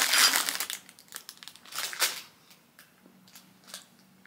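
Clear plastic bag crinkling as it is handled and opened. The crinkling is dense for about the first second, then breaks into scattered crackles that die away after about two seconds.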